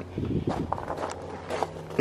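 Footsteps walking, a few irregular light knocks over a faint steady low hum.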